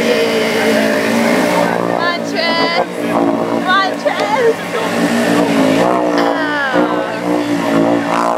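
ATV engines running hard at high revs as the machines churn through a deep mud pit, their pitch rising and falling as the riders work the throttle. Voices shout over the engines now and then.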